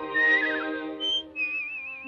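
Cartoon birdsong whistled in short answering phrases over held orchestral chords: first a gliding, falling note, then a brief high chirp, then a warbling trilled note.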